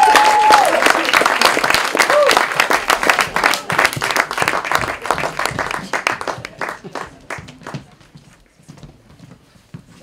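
Audience applauding and cheering, with a whoop at the start and another about two seconds in; the clapping thins out and dies away after about seven seconds.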